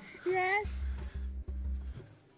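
A girl's short laugh, over a low rumble that comes and goes.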